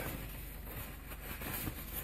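Quiet room tone: a faint, even hiss with no distinct sound in it.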